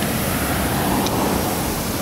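Passing road traffic on the highway: a steady rush of tyre and engine noise, with a small tick about a second in.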